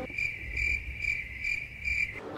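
Cricket chirping sound effect: a steady high trill that swells about twice a second, used as the 'crickets' gag for an awkward silence.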